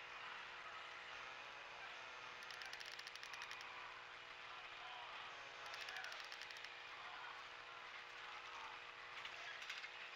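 Faint workshop ambience: a steady hum under a low wash of noise, broken three times by short bursts of rapid mechanical clicking.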